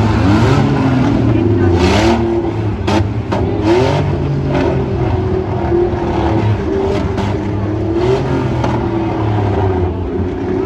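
Demolition-derby minivan engines revving, their pitch rising and falling repeatedly over a steady low drone. A few sharp crash impacts come between about two and four seconds in.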